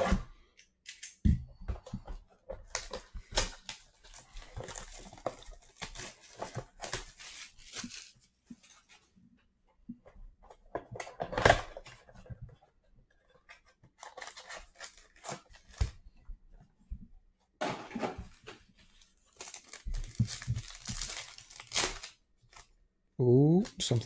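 A blaster box of trading cards being unwrapped and opened by hand: plastic wrap and cardboard tearing, then a card pack's wrapper crinkling and ripping open, in irregular bursts with one sharp tear about halfway through. A man's voice starts just before the end.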